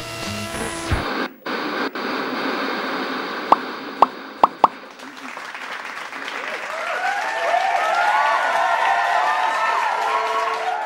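Sound effects over the title card: a hiss of TV static, then four quick pops close together about three and a half to five seconds in. A swell of many overlapping voices builds through the second half.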